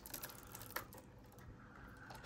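A few faint light clicks as a small pin-header ribbon-cable plug and its spiral-wrapped wiring are handled against the circuit board inside the analyzer.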